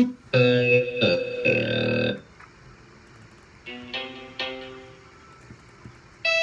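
Guitar-like plucked melody notes from a beat being worked on, played in short stop-start snatches: a phrase over the first two seconds, then two single notes that ring out and fade near the middle, with quiet gaps between.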